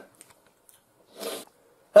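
A man's short, breathy intake a little after a second in as a sneeze builds, then the sneeze breaking out loudly right at the end.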